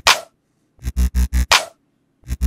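Electronic beat playing back: the drop's chords and mid bass pulse quickly, about six times a second, over a deep bass. A bright, noisy hit falls at the start and another about one and a half seconds in, with short silent gaps between the phrases.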